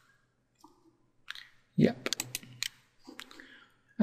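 A few computer mouse clicks around the middle, mixed with a short murmur of voice.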